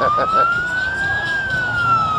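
A siren wailing in one slow sweep: its pitch climbs to a peak a little past the middle, then falls away.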